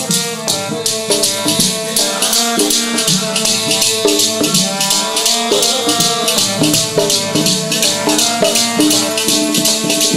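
Instrumental interlude of kirtan music: a harmonium playing a melody of held, stepping notes over a rattling percussion that keeps a quick, steady beat.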